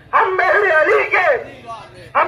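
A man's voice chanting a single phrase of a little over a second into a microphone, amplified through a loudspeaker so that it sounds thin and harsh. The chant starts just after the opening.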